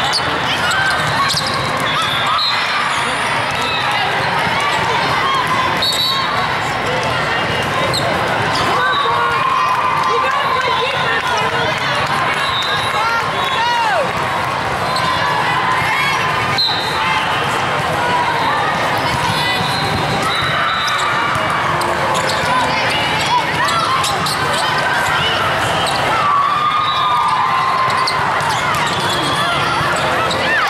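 Echoing hubbub of a large sports hall during indoor volleyball play: many voices of players and spectators, volleyballs being struck and bouncing, and several short sneaker squeaks on the court floor.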